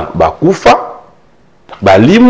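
A man speaking in short, emphatic bursts, with a pause of about a second in the middle.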